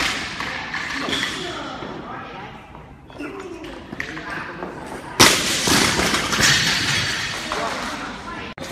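A loaded barbell with rubber bumper plates dropped from overhead, landing on the floor with a loud thud about five seconds in, followed by a couple of seconds of rattling and echo in a large hall. Voices are heard in the background.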